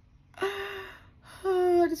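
A woman's voice making two drawn-out, breathy vocal sounds, each about half a second long and held on one pitch, the second a little lower. Speech starts right at the end.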